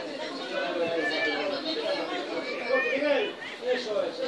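Several people talking over one another in an open-air setting, with no single voice clear enough to make out.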